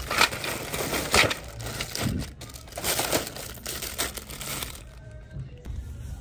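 Clear plastic bags crinkling and rustling as bagged toys are grabbed and shifted on a store shelf, in irregular crackles that grow quieter about five seconds in.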